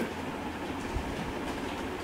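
Steady low background rumble and hiss, with one faint soft thump about a second in.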